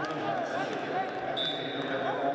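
Voices shouting across a wrestling arena during live action, with a steady high tone starting about three-quarters of the way through.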